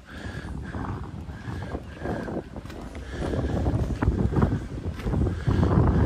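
Wind buffeting the microphone as a low, uneven rumble that grows louder about halfway through.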